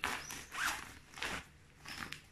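Clear plastic packaging crinkling and rustling as a wrapped garment is handled and opened, in about four short rustles.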